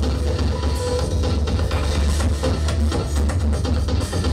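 Live electronic music: an electric bass guitar playing over a programmed drum beat and electronics, with a heavy, steady low end.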